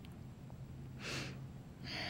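A woman's short, sharp breath in about a second in, then a longer breath out starting near the end, picked up by a close microphone over a low steady hum.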